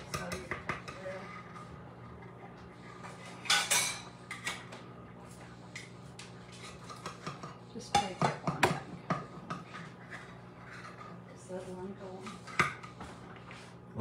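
A metal knife scraping and clinking against a metal muffin tin as it is worked around the edges of baked cornbread muffins to loosen them. The scrapes come louder about three and a half seconds in and again around eight seconds.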